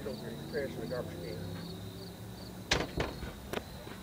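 Insects chirping steadily, about three chirps a second, over a low steady hum, with a few sharp knocks near the end.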